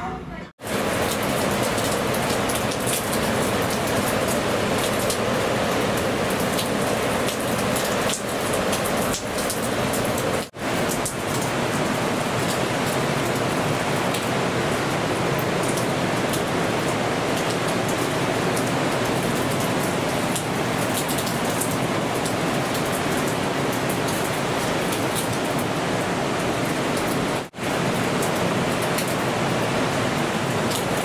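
Steady, loud rushing noise of rough surf and wind under a storm sky, cutting out briefly twice.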